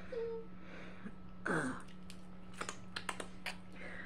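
A handful of light, sharp clicks and taps from a table knife and dishes being handled, over a steady low hum, with a short "uh" from a woman.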